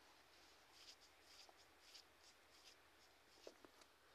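Near silence: faint room tone with a few soft, brief scratchy rustles in the first half and two or three small clicks near the end.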